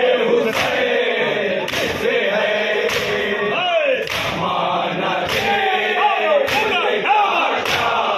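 Men chanting a Shia noha (lament) in chorus while a crowd of mourners beats their chests in unison in matam. A sharp, shared slap lands about every 1.2 seconds, seven times, under the singing.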